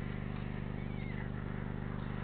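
A steady low hum with a faint background haze, and one short, faint falling chirp about a second in.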